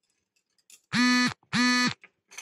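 Two loud, buzzy honks of one steady pitch, each about half a second long, a short gap apart, from a horn or buzzer-like signal.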